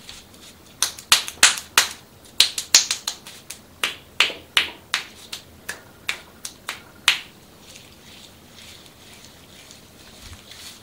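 Hands patting and tapping a wet face and forehead in quick, sharp smacks, about twenty of them at roughly three a second, stopping about seven seconds in.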